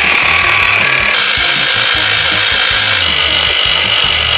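Toy foot spa switched on, its motor running with a loud, steady, hissing buzz among the water beads that turns harsher about a second in.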